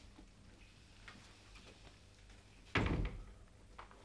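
A wooden door shut with a single firm thud nearly three seconds in, with a few faint small knocks before it.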